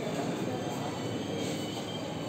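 Steady hubbub of many people talking at once in a crowded hall, with no single voice standing out.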